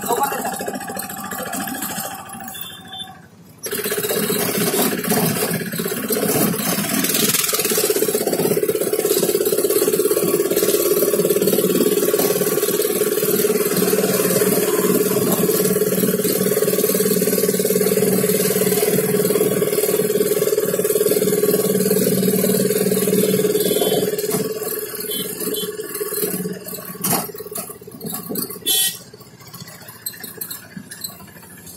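Steady road and engine noise of a moving vehicle with a low, even hum. It starts suddenly about four seconds in, eases off about 24 seconds in, and a few clicks follow near the end.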